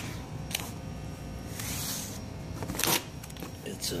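Cardboard box being handled up close: a few sharp knocks and a stretch of scraping, rustling cardboard. The loudest knock comes near the end.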